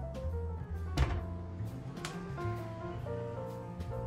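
Jazz background music with piano, and a single thunk about a second in as a kitchen cabinet door is shut.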